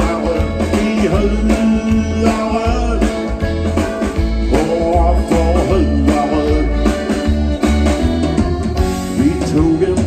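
Live band music: a man singing into a microphone over electric guitar and drums, with a steady bass line underneath.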